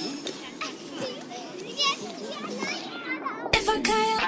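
Background of children's voices chattering and playing, with a few bright ringing tones near the start. A loud burst comes about three and a half seconds in, just before music starts.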